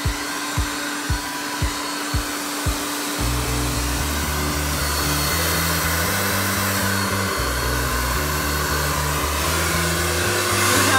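Blow dryer running steadily, blowing air over a wet Pomeranian's coat, with background music: a regular beat, then a bass line from about three seconds in.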